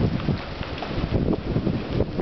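Strong storm wind gusting across the microphone, an uneven rumbling buffet that swells and dips.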